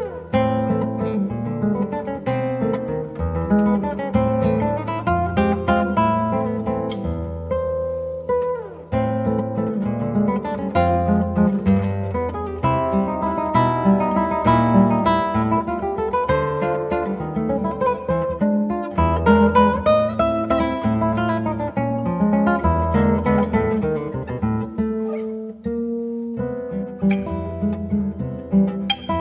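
Solo classical guitar played fingerstyle: a busy stream of plucked notes and chords over deep bass notes, with a brief lull about eight seconds in.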